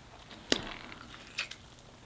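Quiet handling of a piece of crispy fried food in the fingers, with two short sharp clicks, one about half a second in and one about a second and a half in.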